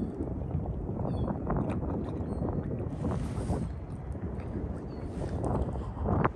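Harbour waterside ambience: a steady low rumble with wind noise on the microphone, a few soft clicks, and two brief hissy swells.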